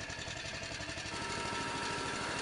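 Small gasoline engine of a walk-behind Ditch Witch trencher running steadily, with a faint higher whine joining about a second in.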